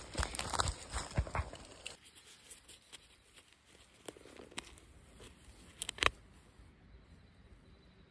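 Fingers picking and scraping at the fabric cover of a soft body armor panel to work a flattened hard cast bullet out of it: rustling and crinkling, busiest in the first two seconds, then scattered sharp clicks, the loudest cluster about six seconds in.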